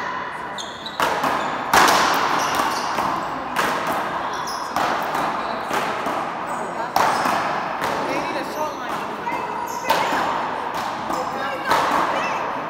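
Paddleball rally: a ball smacked by solid paddles and off the front wall, about seven sharp hits a second or two apart, each echoing in the large indoor court.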